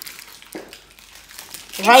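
Faint crinkling of sweet packaging, with a few soft ticks, and then a voice starts speaking near the end.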